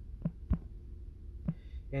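A steady low rumble with three short, dull thumps, the loudest about half a second in and another about a second and a half in.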